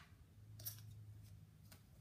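Near silence: a faint steady low hum, with two faint clicks about two-thirds of a second in and again a second later as hair is handled on the mannequin head.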